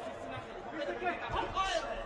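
Overlapping voices in a large arena hall: people talking and calling out, with no clear words.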